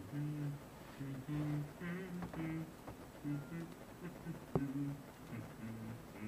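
A man's low voice humming short, steady notes in a quick run with brief breaks between them, recorded with heavy reverb. A single sharp click sounds about four and a half seconds in.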